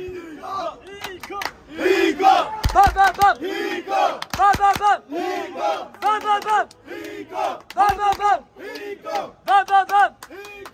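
A group of voices chanting short, shouted syllables in a quick, repeating rhythm, loud from about two seconds in.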